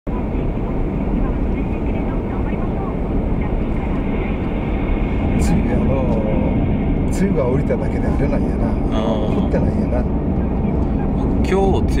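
Steady low rumble of road and engine noise inside a moving car's cabin, with people talking over it from about halfway in.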